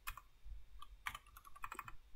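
Computer keyboard being typed on: a quick, uneven run of key clicks.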